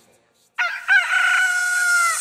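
After about half a second of silence, a rooster crows once: a few short rising notes, then one long held note.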